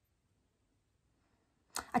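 Near silence for most of the time. Near the end a woman takes a short breath and begins to speak.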